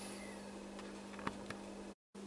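Faint steady low hum and hiss from an amplifier test bench, with two faint ticks a little past the middle.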